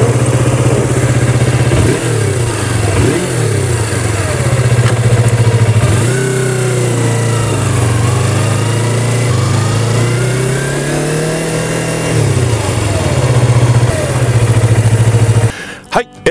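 2019 Yamaha YZF-R25's 249 cc parallel-twin engine running as the bike is ridden about, its note rising and falling several times with the throttle and road speed. The engine is shut off shortly before the end.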